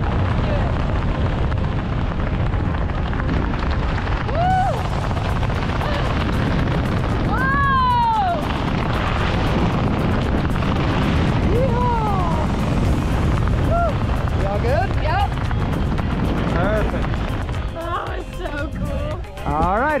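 Strong wind rushing over the microphone as a tandem parachute swings through spiralling canopy turns, with a handful of short rising-and-falling whoops and screams from the passenger.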